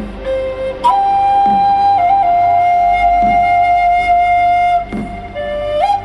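Native American style flute in the key of G playing a melody: a shorter note, then a long held note from about a second in to nearly five seconds with a small step down in pitch partway through, and a rising note near the end. Underneath runs a low drone with a soft beat about every second and a half.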